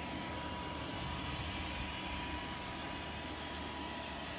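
Electric inflation blower running steadily, keeping an inflatable movie screen filled with air: an even, unchanging hum and rush of air.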